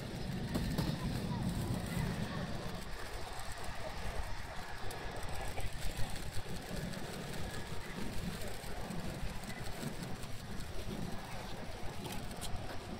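Distant F-16 fighter jet's engine rumbling as the jet moves along the runway, strongest in the first few seconds, with people talking nearby.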